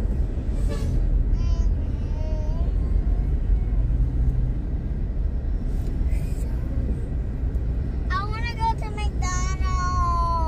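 Steady low rumble of a car driving in traffic, heard from inside the cabin. A child's high voice sings or vocalizes briefly about two seconds in, then louder in a drawn-out, wavering line near the end.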